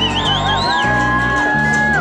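Live band music: a plucked-string instrument over a steady bass line, with long held notes. In the first second someone in the audience gives a wavering whoop.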